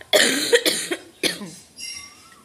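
A woman crying with her hand over her mouth: three short, noisy, choked sobs in the first second and a half, then quieter near the end.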